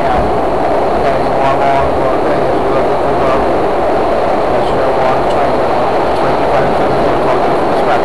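SEPTA Broad Street Line subway car running, heard from inside the car: a loud, steady roar of the train in motion, with a few faint clicks scattered through it.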